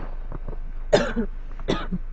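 A man coughing: two short, sharp coughs, about a second in and again near the end.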